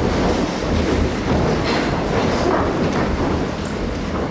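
A seated congregation rising to its feet: many chairs scraping and knocking on a wooden floor at once, with shuffling feet and rustling clothes, a dense steady clatter.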